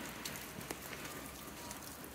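Rain falling: a steady hiss with scattered sharp drop ticks, one sharper tick a little after half a second in.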